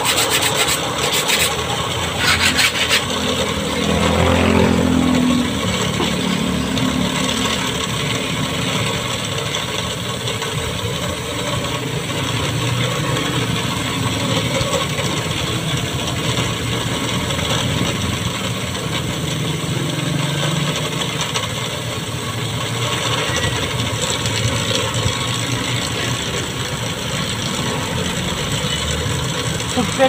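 A metal file rasping across the teeth of a hand saw, stroke after stroke, as the saw is sharpened.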